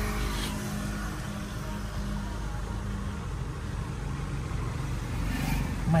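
Car engine idling, a steady low hum heard from inside the cabin.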